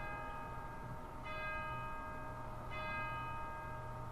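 A bell struck three times, about a second and a half apart, each stroke ringing on under the next.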